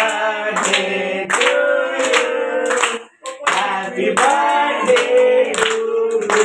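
A group of people singing together, with hand clapping in a steady rhythm, broken by a brief pause about three seconds in.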